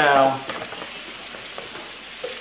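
Food sizzling steadily as it fries in a pan on a stovetop.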